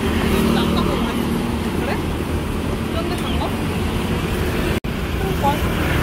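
Road traffic on a busy city street: a steady rumble of passing cars and motorbikes, broken off for an instant about five seconds in.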